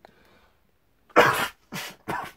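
A man blowing forcefully into a tissue held over his nose, staging a head cold: two short blasts about a second in, the first louder.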